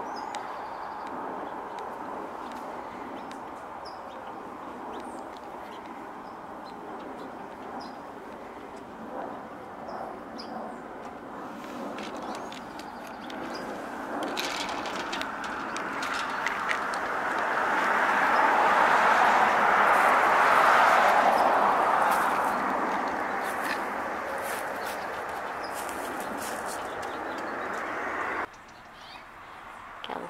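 A steady wash of distant traffic noise that swells to its loudest about two-thirds through and then fades, with a few faint high bird chirps in the first third. The noise breaks off suddenly near the end.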